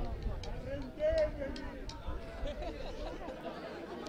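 Distant voices of footballers and spectators calling out across an open pitch, with one voice louder about a second in, over a low rumble.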